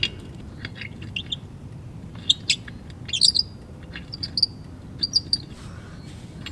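Birds chirping: a scatter of short, high chirps and quick trills, busiest around the middle, over a low steady rumble.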